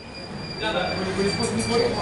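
Busy restaurant background noise: indistinct voices and movement with a steady high-pitched whine, growing louder in the first second.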